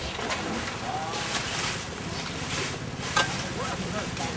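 A metal shovel scooping and scraping soil out of burlap sacks, in several hissy scraping spells, over steady wind noise on the microphone. A sharp knock about three seconds in is the loudest sound.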